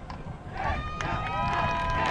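Spectators cheering and whooping, starting about half a second in, with several long overlapping high yells that drop in pitch as they end.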